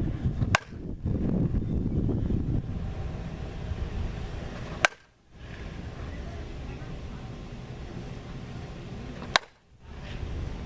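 Softball bat hitting tossed softballs three times, each a sharp crack about four seconds apart, over a steady low outdoor rumble.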